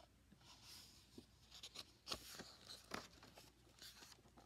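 Faint rustling of paper and a few soft taps as a page of a picture book is turned.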